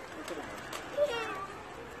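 Feral pigeons flapping and pecking as they crowd onto a hand held out with seed, with faint brief wing flutters, and a short vocal cry about a second in that falls in pitch.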